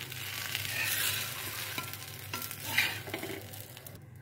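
Paneer masala dosa frying on a hot tawa: a steady sizzling hiss that swells briefly about a second in and again near the end.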